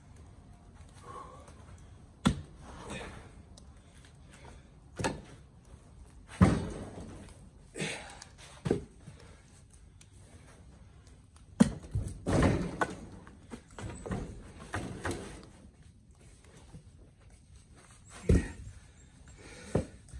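Oak firewood blocks knocking and thudding on a pickup truck's bed as they are hooked and dragged to the tailgate with a Fiskars hookaroon. There are about nine separate knocks at uneven intervals, the loudest near the middle.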